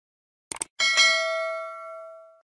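Subscribe-animation sound effect: a quick double mouse click about half a second in, then a notification bell ding that rings out with several tones and slowly fades.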